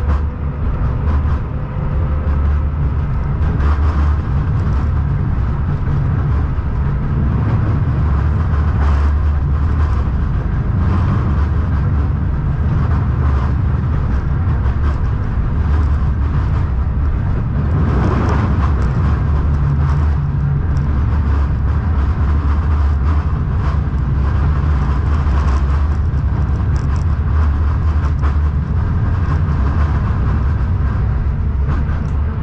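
A KTM-19 (71-619KT) tram running along the track, heard from inside the car: a steady low rumble with occasional short clicks and knocks.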